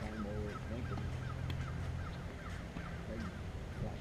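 A bird calling over and over in short falling notes, about four or five a second, over a steady low hum that fades about halfway through.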